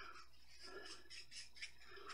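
Faint, quick rubbing strokes, several a second, as the bristles of a wide paintbrush are wiped in a towel to take the brown oil paint out of them.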